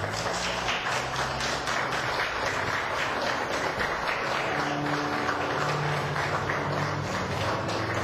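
A congregation applauding the newly married couple: dense, steady clapping that swells in just before the start and holds throughout, over music with low sustained notes.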